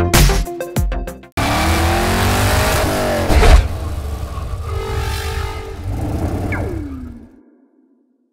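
Electronic music with a heavy beat stops about a second in, and a car sound effect for the logo takes over: an engine revving and passing by, its pitch rising then falling with the loudest moment about two seconds later, then a single falling tone as it fades out shortly before the end.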